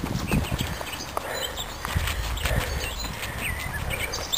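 Jogging footsteps on a gravel path, irregular soft thuds over a low rumble from the camera being carried along.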